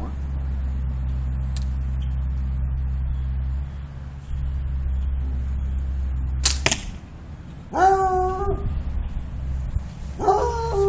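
A Turkish-style horse bow shot from full draw about six and a half seconds in: one sharp snap of the string as the carbon arrow leaves, from a bow that is pretty snappy. About a second later comes a short, high-pitched voiced sound of even pitch, over a steady low rumble.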